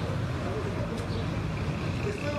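Steady low rumbling noise with faint, indistinct voices.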